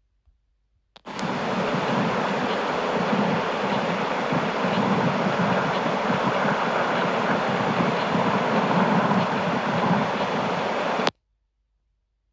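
A trail camera's own recorded audio played back: a steady rushing noise with no distinct events. It starts abruptly with a click about a second in and cuts off just as abruptly near the end.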